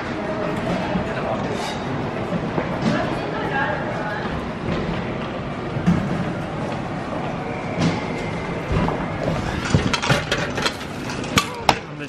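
A vending machine vends a bagged banana, which drops with a soft thump onto its foam-padded tray about halfway through. Near the end comes a run of sharp clicks and clinks as change falls into the coin return, over background voices.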